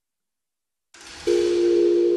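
The audio cuts out to dead silence, then about a second in a hiss comes up, and soon after a steady electronic tone of two low pitches starts and holds.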